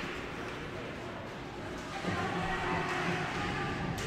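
Ice hockey rink ambience during play: a steady arena noise, with faint distant voices calling from about halfway through.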